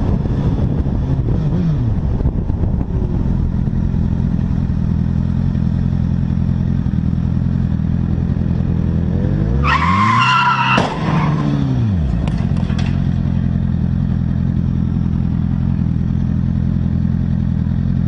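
Motorcycle engine running steadily, with wind on the microphone. About ten seconds in, tyres squeal for about a second in a skid, ending in a sharp crack from the car crash.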